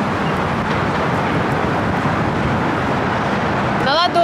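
Steady roar of strong wind buffeting the microphone, mixed with road traffic, with no distinct events.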